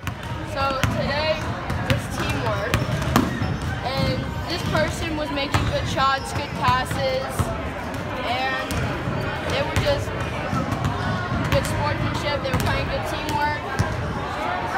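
Many children's and adults' voices chattering at once in a gymnasium, with a basketball bouncing on the hardwood floor now and then.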